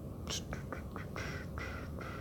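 A few quick clicks, then two short raspy calls in quick succession in the second half, like an animal calling.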